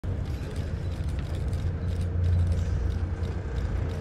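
Steady low hum of a boat's engine running, heard from aboard.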